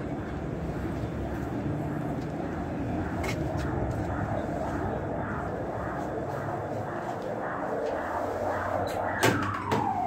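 Steady city street traffic noise. Near the end a heavy wooden entrance door's latch clicks sharply, followed by a long squeal that falls steadily in pitch.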